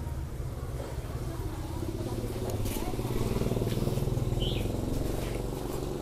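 A motor vehicle's engine running past, a low hum that swells toward the middle and then eases off.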